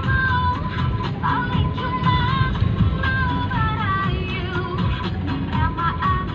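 A song playing, with a high, gliding vocal melody over a steady low rumble.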